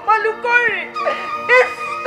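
Stylised vocal delivery from the stage with short, sharply falling cries, over a steady drone from the accompanying music.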